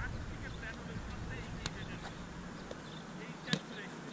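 Two sharp slaps of a small rubber roundnet ball being struck during a rally, about a second and a half apart, the second louder, over a steady low outdoor rumble and faint voices.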